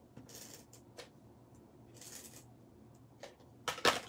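Adhesive being applied to cardstock: two short, faint scraping strokes across the paper and a few light clicks, then a louder sharp knock near the end.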